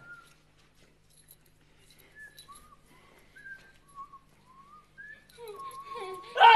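A run of faint, short, whistle-like chirps, each sliding briefly up or down, about one every half second to a second, with a longer level note near the end.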